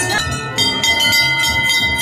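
Metal bells struck over and over, about twice a second, each strike renewing several long ringing tones that hang on between strikes.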